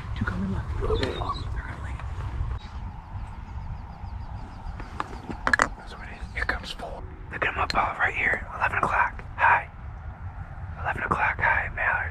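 Hushed whispering voices in patches, loudest in the second half, over a steady rumble of wind on the microphone. Dry cattail stalks rustle and click against it.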